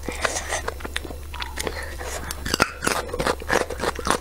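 Close-miked chewing of enoki mushrooms in chili oil: a run of wet mouth clicks, smacks and soft crunches, thickest in the second half.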